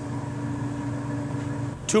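Steady low mechanical hum of commercial kitchen equipment under a faint hiss, with one held tone in it stopping shortly before the end. A man's voice starts right at the end.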